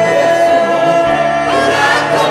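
Gospel choir of mixed voices singing a worship song, holding long, sustained notes.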